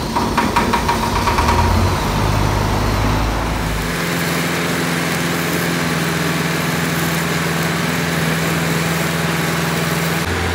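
Stick arc welding on a steel truck axle housing: the arc buzzes and crackles. It is irregular at first and settles into a steady hum with a hiss from about four seconds in.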